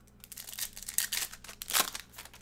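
Foil wrapper of a trading card pack crinkling and tearing as it is ripped open and the cards are slid out, in a run of crackly bursts, the loudest near the end.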